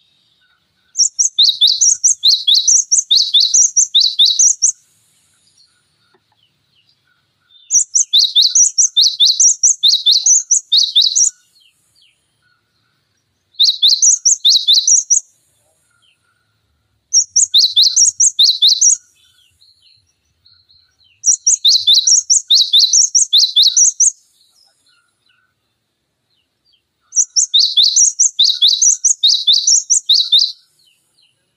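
Cinereous tit (gelatik batu) singing loud, sharp two-note phrases, a high note and a lower one repeated over and over. The song comes in six bouts of two to four seconds each, with short silent gaps between them.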